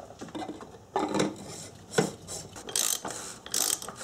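Ratchet wrench clicking in several short bursts as it tightens the cap of an engine-mounted oil filter housing.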